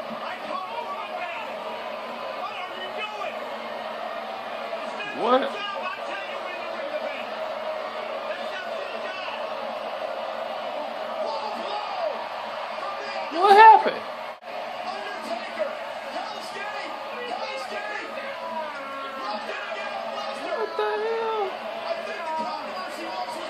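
Televised pro-wrestling match heard through the TV speakers: a steady arena crowd with commentators' voices talking over it. Two short loud rising shouts stand out, a small one about five seconds in and a louder one in the middle.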